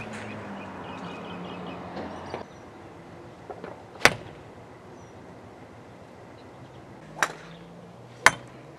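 Golf club striking a golf ball off a driving-range mat: one sharp crack about four seconds in, and a second, softer crack a little after seven seconds.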